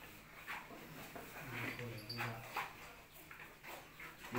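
Low human voice drawn out for about a second in the middle, among scattered small sounds in the room.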